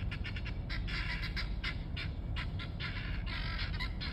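A flock of domestic guinea fowl calling: many short, harsh calls overlapping, several a second, over a steady low rumble.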